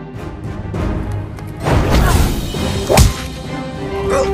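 Action background music with a sharp whoosh-and-hit sound effect about three seconds in.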